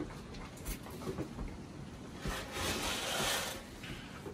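A scoop dug into dry feed in a galvanized metal can: a rushing rattle of grain lasting over a second, starting about two seconds in. Before it come scattered small clicks of deer nosing pellet feed in plastic bowls.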